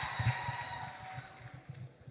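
Faint steady high whine from the microphone and sound system, fading away over the two seconds, with soft low bumps.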